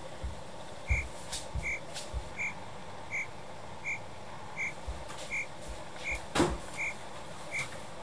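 Cricket-chirp sound effect: about ten short, even chirps, one roughly every three-quarters of a second, the comedy cue for an awkward silence after a joke falls flat. A few soft low thumps come in the first two seconds, and a sharp click comes about six and a half seconds in.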